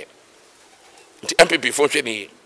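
A brief pause, then a man's voice speaking for about a second, starting a little past the middle.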